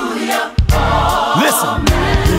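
Gospel song: a choir singing over a steady bass accompaniment, with a brief drop in loudness about a quarter of the way in.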